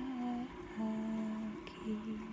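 A voice humming a slow tune in long, steady held notes: a short one, then a longer, lower one, and another beginning near the end.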